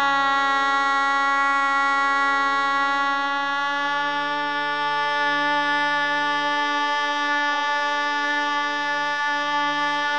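Shehnai holding one long, steady note in raga Alhaiya Bilawal over a low steady drone, with a slight waver about seven and a half seconds in.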